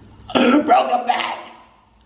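A man's loud burst of laughter, starting about a third of a second in and fading out over about a second.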